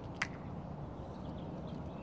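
Steady outdoor background noise, with one short sharp click shortly after the start.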